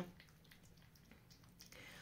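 Near silence, with faint sounds of a cat licking and eating wet pâté from a saucer.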